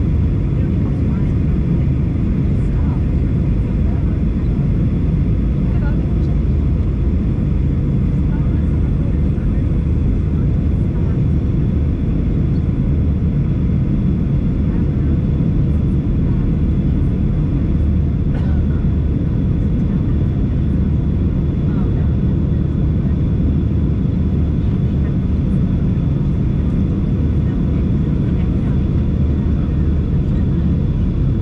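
Steady cabin noise of a Boeing 737-900 airliner on approach, heard from a seat beside the wing: a deep, even rumble of the CFM56 turbofan engines and rushing airflow, with a faint steady high tone above it.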